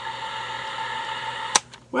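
Steady background hum with a few held tones, cut off by a sharp click about one and a half seconds in, followed by a moment of near quiet before a woman starts speaking.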